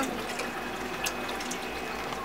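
Steady sound of running water, with a faint hum underneath and a single light click about a second in.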